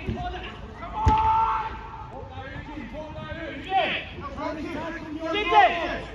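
A football struck once with a sharp thud about a second in, amid players' shouts and calls, the loudest calls near the end.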